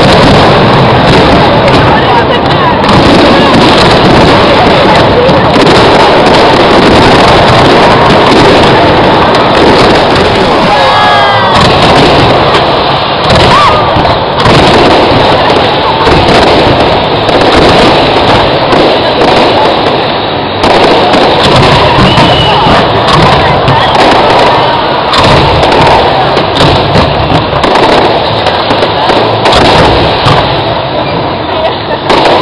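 Aerial fireworks bursting in a continuous barrage, loud enough to keep the camera's microphone overloaded, with crowd voices mixed in.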